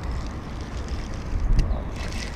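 Steady low wind rumble on the microphone, with no clear event over it.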